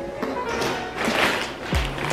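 Music, with a low thump just before the end.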